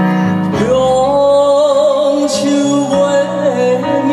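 Live band music opening a song: steady backing chords, with a long held melody note that enters about half a second in and wavers slightly.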